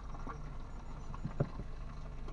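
A car's engine idling steadily, heard from inside the cabin, with a few faint clicks.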